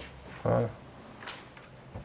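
Quiet room tone in a small room, broken about half a second in by one short vocal sound from a man, and a faint breathy hiss near the middle.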